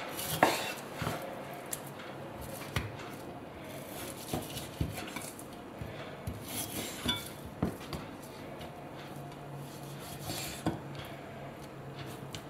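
Kitchen knife cutting raw pork neck on a wooden chopping board: irregular sharp knocks and taps of the blade and meat on the board, a few seconds apart.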